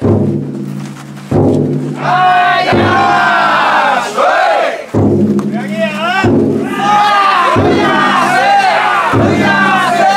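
The big taiko drum inside a Banshu festival float beaten slowly, about one stroke every second and a half, each stroke ringing on, while a crowd of bearers shouts a chant in time with the beat.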